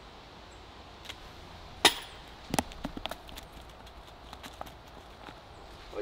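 A disc golf putt that misses high: a sharp crack about two seconds in and a duller knock just after. Light scattered crunching of footsteps in dry leaves follows.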